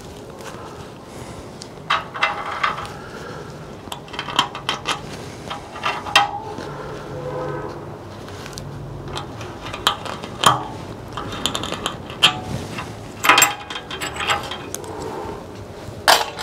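A hand scribe scratching a knife-blade outline into layout fluid on a small Damascus steel blank, with irregular short scrapes and clicks as the blank and tools shift on a perforated steel table.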